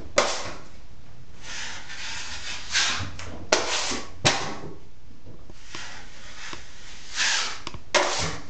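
A 12-inch steel drywall knife scraping excess wet joint compound off a taped wall seam in repeated sweeps, with a few sharp clacks of the blade.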